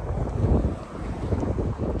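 Wind buffeting the microphone, a low rumble, while a car's driver door is unlatched and swung open.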